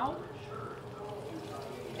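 Kingfish steaks frying in shallow oil in a frying pan, the hot oil sizzling steadily.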